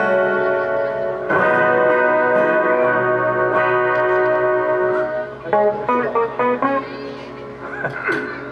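Two acoustic guitars played through a PA: strummed chords ring on, freshly struck a little over a second in and again about three and a half seconds in, then a run of short, clipped notes from about five and a half seconds before the playing softens near the end.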